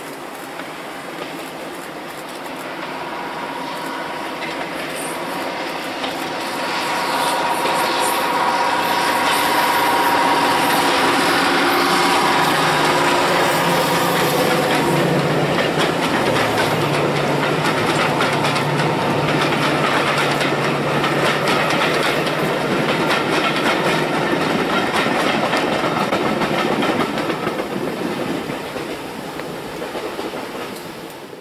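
A diesel-hauled passenger train approaching and passing: the locomotive's engine grows louder over the first several seconds and goes by. The coaches then roll past with a clickety-clack of wheels over the rail joints, fading near the end.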